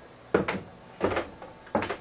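Three short clunks, evenly spaced about two-thirds of a second apart.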